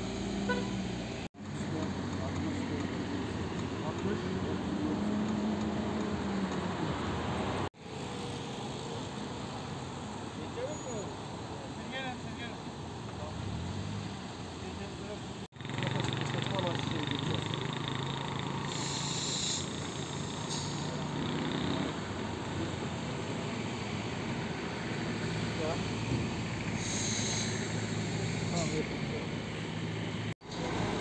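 Car engines idling close by, a steady low hum, with low, indistinct talk.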